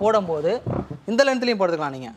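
Speech only: a person talking, with long drawn-out syllables.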